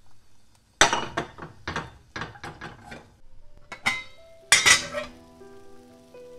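A metal mesh sieve of cooked minced beef clattering against the saucepan it sits on while the meat juice is drained: a quick run of sharp metallic knocks, then two louder ones about four and four and a half seconds in. Soft background music with held notes comes in near the end.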